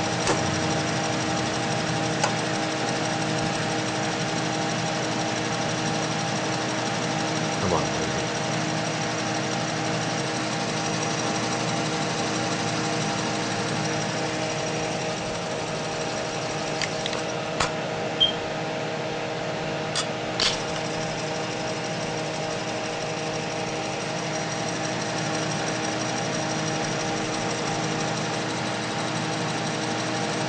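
Altair 8-inch floppy disk drive running with the computer: a steady mechanical hum and whir, with a few sharp clicks from the drive mechanism about two-thirds of the way through.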